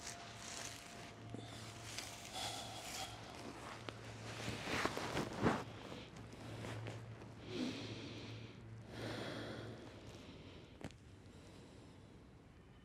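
Soft rustling of a quilted down vest and yoga mat on dry grass as a person lowers from all fours onto her side, then a few slow breaths as she settles and lies still. The sounds thin out toward the end.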